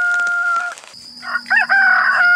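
Rooster crowing: one crow ends on a long held note about a third of the way in, and a second crow begins a little after halfway, rising and then holding steady.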